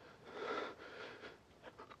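A frightened woman's faint, shaky breathing as she cries, with soft breathy swells about half a second in and again around a second.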